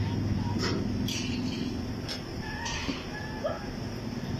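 Steady low hum of a mobile crane's diesel engine running, with a few short hisses and indistinct workers' voices in the background.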